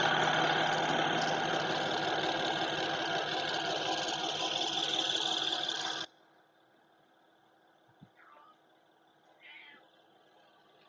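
Electric toothbrush buzzing in the mouth during a gum massage: a steady hum with brushing noise over the teeth and gums that cuts off suddenly about six seconds in.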